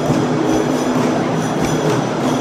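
Loud, steady din of a crowded indoor mall concourse, with music playing underneath.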